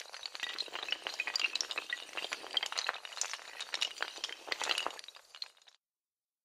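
Dominoes toppling in a long chain: a dense clatter of small hard clicks and clinks that stops suddenly near the end.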